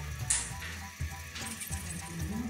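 Background music with a steady low bass line, over a sharp clack shortly after the start and light clicking and rattling of domino tiles and a plastic domino box being handled.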